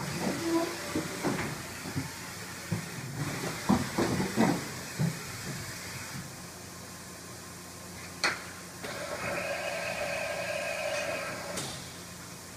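OKK VM-5 III vertical machining center running, with a steady low hum throughout and scattered clicks and knocks from the moving head and table. About eight seconds in comes a sharp click, then a steady machine whine for about three seconds that stops with a click.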